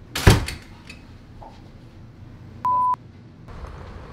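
A sharp thump a quarter second in, then a short, steady, high electronic beep of about a third of a second near three seconds in, a dubbed censor-style bleep tone. Near the end a low steady rumble comes in.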